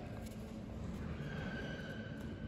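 Quiet sports-hall ambience: a low steady hum with a faint high thin tone held for under a second just past the middle.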